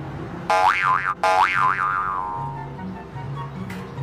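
Two comic sound effects, each a pitch that swoops up and down twice in quick succession, over background music with a steady bass line.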